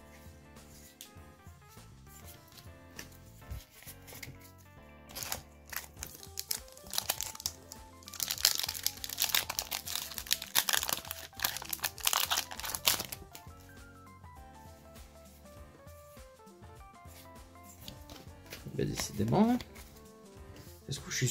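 Foil Yu-Gi-Oh! booster pack wrapper crinkling and tearing as it is opened by hand, loudest from about five to thirteen seconds in, over soft background music.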